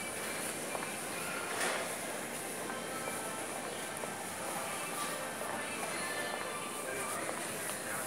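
Supermarket background music over the steady hubbub of the store, with distant voices.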